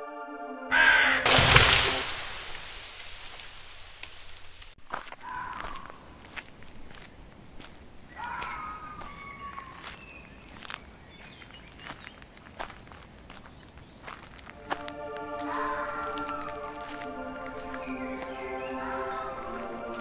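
Crows cawing at intervals of a few seconds across a sparse soundscape, with a loud noisy burst about a second in. Sustained music chords come back in about three-quarters of the way through and run under the last caws.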